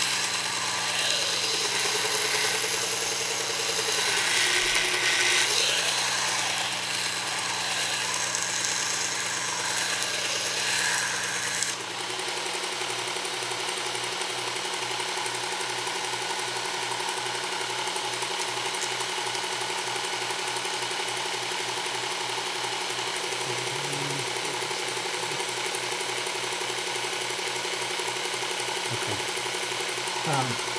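Work Sharp belt knife sharpener with its blade grinding attachment and a coarse 120-grit belt, grinding steel off a knife blade to reshape a tanto transition into a drop-point belly: a steady hiss of steel on the belt over the motor's hum. About twelve seconds in the blade comes off the belt and the sharpener runs on alone with a steady hum.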